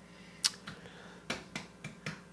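A handful of short, sharp clicks, the first and loudest about half a second in, the rest fainter and spread through the next second and a half.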